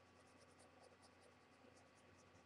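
Very faint scratching of a pencil shading on paper, short strokes in quick, irregular succession, over a low steady hum.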